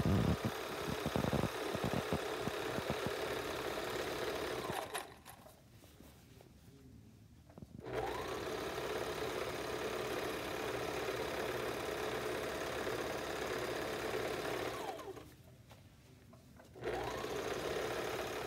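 Serger (overlock sewing machine) running, stitching the sides of PUL-and-fabric bag pieces in a continuous chain. It runs for about five seconds, stops for about three, runs for about seven more, pauses briefly, and starts again near the end, with a few sharp clicks in the first seconds.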